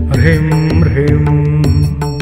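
Devotional mantra music: a steady sustained instrumental backing with repeated percussion strikes, and a short chanted syllable just after the start.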